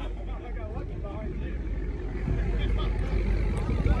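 Low engine rumble of a red C5 Chevrolet Corvette's V8 as the car rolls slowly past, growing louder toward the end, with faint voices from the crowd in the background.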